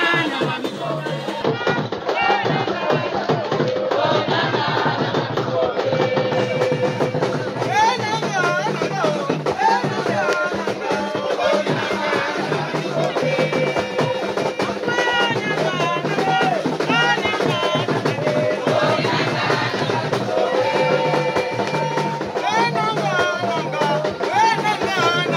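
Gabonese Elombo ritual music performed live: voices singing over a steady, fast beat of drums and hand percussion, without a break.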